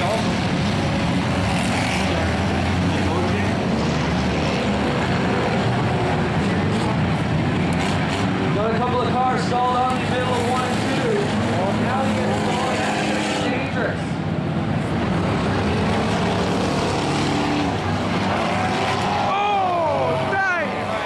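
The engines of a pack of enduro race cars running steadily as they circle a dirt oval, with some engines rising and falling in pitch.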